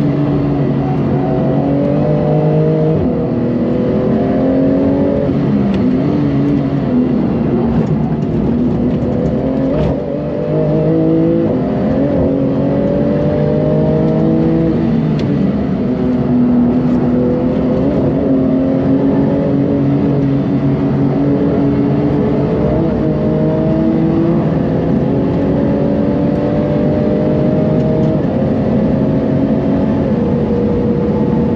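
Porsche 911 GT2 RS's 3.8-litre twin-turbo flat-six under hard acceleration, heard from inside the cabin. The engine pitch climbs and then drops at each of several upshifts, with a brief dip in level about ten seconds in.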